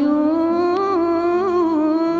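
A woman's voice holding one long sung note, wavering and ornamented in pitch and rising slightly, over quiet instrumental accompaniment in a vintage Algerian song recording.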